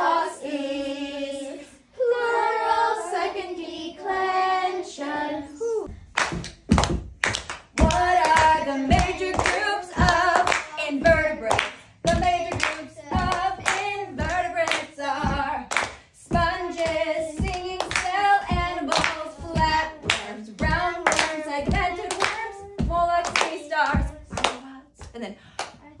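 A woman and a young girl singing a memorised song together. From about six seconds in, steady rhythmic hand claps keep time with the singing.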